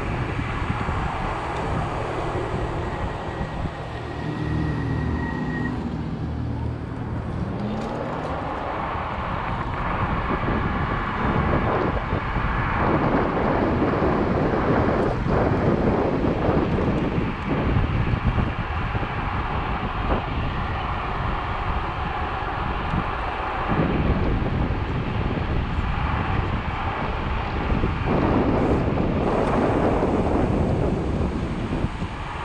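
Wind buffeting the microphone over steady tyre and road noise from an electric scooter ridden at speed on a paved road. A short low whine rises and falls a few seconds in.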